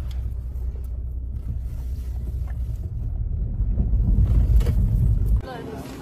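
Honda car's cabin noise while driving: a steady low rumble of engine and road that grows louder about four seconds in, then cuts off abruptly shortly before the end.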